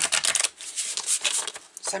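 A deck of oracle cards being riffle-shuffled by hand, the two bent halves flicking together in a dense crackle for about half a second, then softer rustling of the cards.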